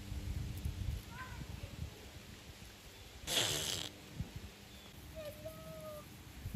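An alpaca nosing at hay held out to it gives one short, breathy snort about three seconds in. There is a faint chirp about a second in and a soft, brief hum near the end.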